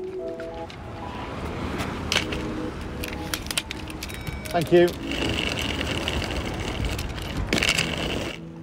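Wheels of a small hard-shell suitcase rolling over rough tarmac: a continuous gritty rumble, with a few sharp knocks along the way.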